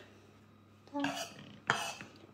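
A single sharp knock of a kitchen knife against a wooden cutting board near the end, after a near-silent pause.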